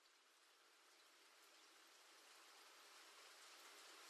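Heavy rain, heard faintly as a steady hiss that fades in and grows gradually louder.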